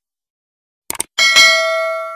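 A short mouse-click sound effect about a second in, followed at once by a bright bell ding that rings on and slowly fades: the click and notification-bell sounds of an animated subscribe button.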